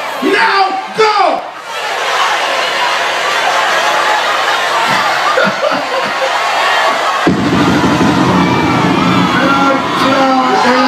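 Concert crowd cheering loudly, after a brief voice at the start. About seven seconds in, a low rumble joins the cheering.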